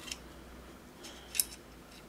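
A few light clicks of small airsoft pistol parts handled as a part is fitted into the pistol's rear section by hand, the sharpest click about one and a half seconds in.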